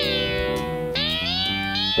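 Ambient electronic music on an analog synthesizer: steady low notes under a bright lead tone that slides down in pitch at the start, then a new note that slides upward about a second in.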